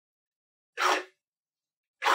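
Stepper motor, microstepped 16x, driving a linear stage carriage through its fastest possible move: a short burst of motor and carriage noise under half a second long, about 0.75 s in, with the next stroke starting at the very end. This is the stepper's top speed, just short of where it would lose steps.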